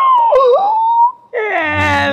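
A person wailing in exaggerated grief. One high drawn-out cry dips and then holds; after a short break a second loud cry slides down in pitch.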